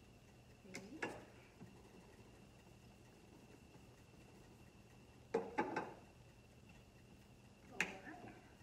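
An upturned drinking cup knocking down onto pie dough and the cutting mat beneath as its rim cuts out crust rounds: two knocks about a second in, a quick run of three a little past halfway, and one more near the end. A faint steady high whine runs underneath.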